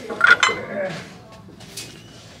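A ceramic dish clinking against other ceramic pieces as it is set down in a plastic shopping cart: a few sharp, ringing clinks near the start, then a faint tick later on.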